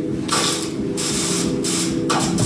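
Performance soundtrack: harsh rasping noise bursts, each about half a second to a second long, starting and stopping abruptly over a low sustained drone.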